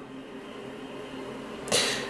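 A steady low background hum in a pause between words, and a short breath drawn in near the end.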